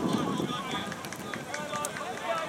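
Indistinct shouts and chatter of several voices overlapping across a soccer field, with a few brief sharp ticks.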